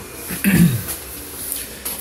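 A person clearing their throat once, about half a second in.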